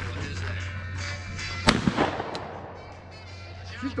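A single shotgun shot a little under two seconds in, sharp and loud, with a short ringing tail after it.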